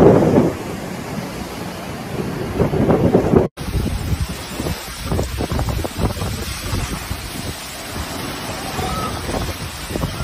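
Hurricane wind gusting and buffeting a phone's microphone. About three and a half seconds in it cuts abruptly to another recording of gusting wind with heavy wind-driven rain.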